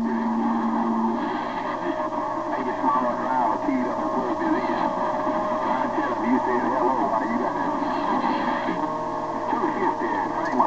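Yaesu transceiver receiving CB skip on 27.025 MHz: several distant stations talking over one another, the voices garbled, with steady heterodyne whistles on top. One low whistle stops about a second in, and a higher one holds from about a second and a half in until near the end.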